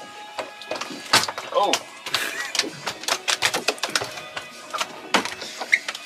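Rapid, irregular slaps and knocks of a mangrove snapper flopping on a fiberglass boat deck, mixed with the clunks of the deck fish-box hatch being unlatched and swung open.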